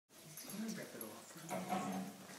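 A dog vocalising as it chases and bites its own tail: a low, wavering sound that grows louder in the second half.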